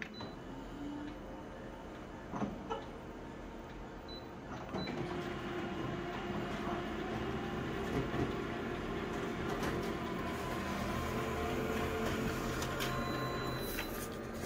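Colour office photocopier making a copy: a short beep as Start is pressed, a couple of clicks, then from about five seconds in a steady mechanical whirring hum as it scans and prints the page.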